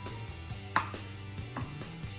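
Wooden pestle pounding cooked cassava in a wooden mortar, mashing it fine. A few dull strikes, the loudest a little under a second in, over a steady low hum.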